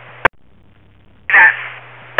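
Two-way radio heard through a scanner between transmissions: hiss and hum cut off by a sharp squelch click about a quarter second in, a moment of faint noise, then another transmission keys up about halfway through with a short burst and hiss.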